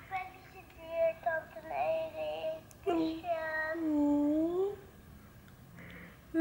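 A woman singing softly to herself in a light, high voice: a few short notes, then a longer note that dips and rises.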